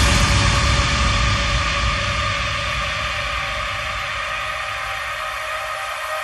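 A sustained electronic noise wash with a few steady tones beneath it, slowly fading out between beats in an electronic dance music DJ mix.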